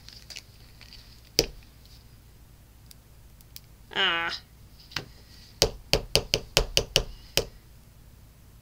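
Plastic glue bottles handled while a small applicator bottle is refilled from a Tombow liquid glue bottle: a single sharp click, then a quick run of about nine sharp plastic clicks and taps in under two seconds near the end. A short hum-like sound comes about halfway through.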